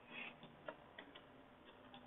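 Near silence, just room tone with a few short, faint clicks.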